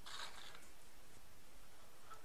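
A brief soft rustle at the very start, then faint steady room hiss.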